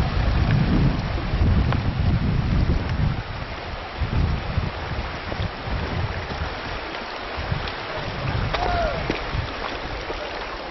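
Shallow rocky river rushing over stones, with wind buffeting the microphone in low rumbling gusts that are strongest in the first few seconds. A brief rising-and-falling call sounds near the end.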